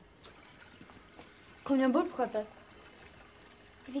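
Speech only: one short spoken word about two seconds in, and the next word starting near the end, over faint room tone.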